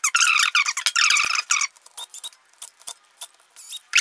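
DeWalt DCF680 8-volt gyroscopic cordless screwdriver running for about two seconds as it drives a terminal screw. Its small motor and gears give a high whine that wavers in pitch. A run of light clicks and taps follows.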